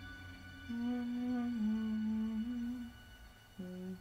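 A person humming a slow melody in long held notes that step down and back up in pitch, fading briefly about three seconds in before a new note starts near the end.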